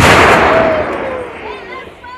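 The boom of an M777 155 mm towed howitzer firing, loudest at the start and rolling away in a long echoing rumble that fades over about a second and a half. A voice is heard faintly near the end.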